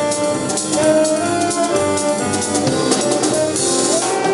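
A small jazz band playing live: a held melody line over piano, bass and drum kit, with regular cymbal strokes and a brighter cymbal wash near the end.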